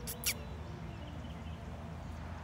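Steady outdoor background noise with two brief, sharp high clicks about a quarter of a second in.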